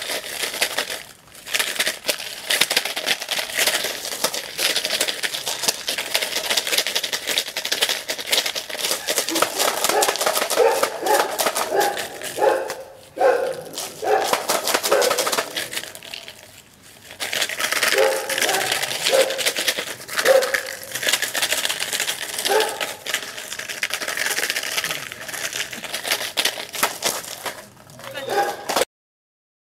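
Empty plastic bottle crinkling and crackling as a puppy bites and tugs at it, a busy run of crunches with a few short pauses.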